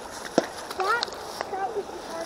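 Short, quiet snatches of a voice, with a couple of sharp clicks, over a steady background hiss.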